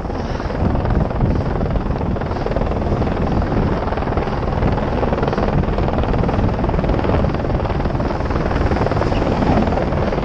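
Wind buffeting a helmet-mounted GoPro's microphone at speed, a loud, steady, rumbling rush, over the hiss of a snowboard gliding across packed snow.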